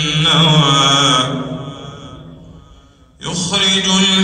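A man reciting the Quran in melodic tajwid style, holding a long wavering note that fades away over about a second and a half. After a brief pause a new phrase begins about three seconds in.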